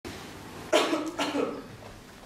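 A man coughing twice in quick succession, two short, sharp coughs about half a second apart.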